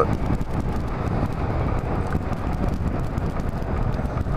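Yamaha Majesty maxi scooter riding at a steady road speed: a steady drone of engine and road noise, with wind rushing over the microphone.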